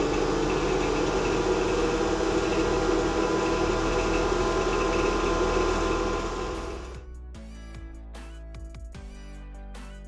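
Two motor-driven water pumps on a hydraulics test rig running together in series, a loud steady hum, while their speed is set to about 2500 rpm. The machine sound cuts off suddenly about seven seconds in, leaving background music.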